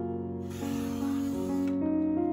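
Soft piano music, with a sliding paper trimmer's blade cutting through a sticker sheet: a hiss lasting about a second in the middle.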